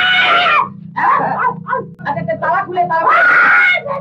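A man's voice on an old film soundtrack, whining and crying out in short sounds, with two long drawn-out wails, one at the start and one near the end, and a laugh at the very end, over a steady low hum.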